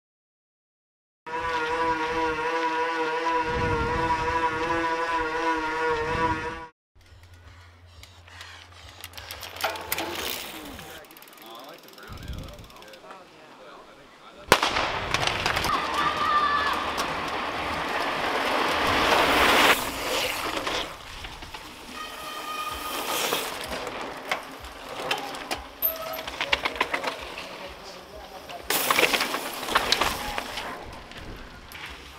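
A short electronic logo jingle with a wavering tone, then mountain bike race sound: a sudden sharp crack about halfway through, followed by a loud stretch of crowd voices and a pack of cross-country bikes rolling past on gravel, and later bikes passing on a forest trail.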